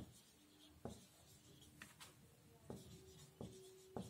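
Marker pen writing on a whiteboard, faint: light taps from the pen strokes about once a second, with a couple of brief thin squeaks.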